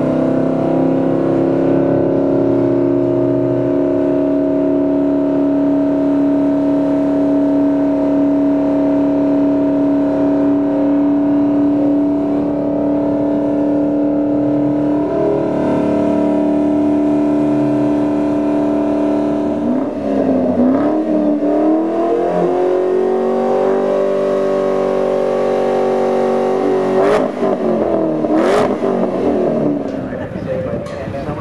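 A 2010 Shelby GT500's supercharged V8 held at steady high revs with the car standing still, its pitch flat for long stretches. About two-thirds of the way in the revs dip and climb back, and near the end the sound changes, with a few sharp clicks.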